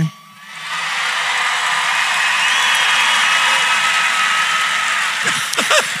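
Live audience applauding and cheering, with a few whistles and whoops. It swells in within the first second, holds steady, and dies away near the end.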